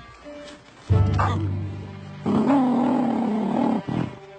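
Cartoon soundtrack with music and a loud, harsh animal cry. The cry starts suddenly about a second in, and a longer wavering call follows from a little past two seconds until near the end.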